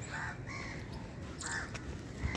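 A bird calls three times in short calls: once near the start, again about half a second in, and once more about a second and a half in, over a steady low rumble.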